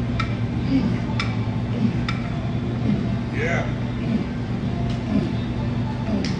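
Gym background: a steady low hum with brief voice sounds, and three sharp clinks about a second apart in the first couple of seconds.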